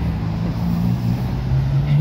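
Passing road traffic: car engines running and tyre noise, with one vehicle's engine note rising steadily through the second half as it speeds up close by.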